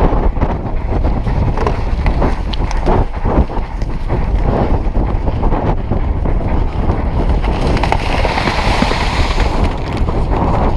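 Heavy wind buffeting on a jockey-mounted action camera's microphone at the gallop, with the irregular drumming of horses' hooves on turf.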